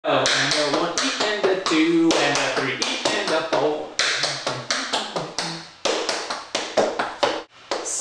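Tap shoes' metal taps striking a wooden floor in quick rhythmic runs: the seven-beat riff walk (touch, dig, heel, dig, toe, heel, heel) danced at speed. The clicks pause briefly near the end.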